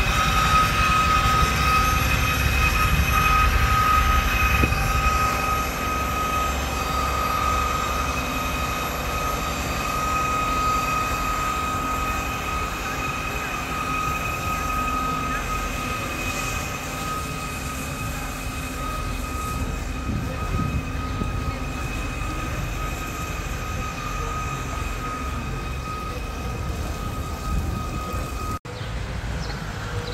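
A machine running steadily with a high whine over a low rumble, fading slowly. It cuts off abruptly near the end.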